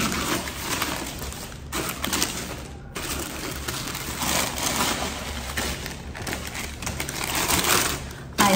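Tissue paper rustling and crinkling as it is pulled open and unfolded inside a shoebox, in uneven handfuls with a couple of brief pauses.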